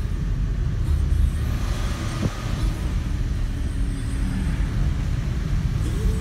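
Steady low rumble of a car driving on a wet road, heard from inside the cabin, with a brief rise in hiss about two seconds in.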